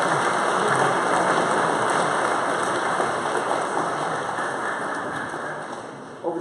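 Audience applauding, the clapping slowly dying away near the end.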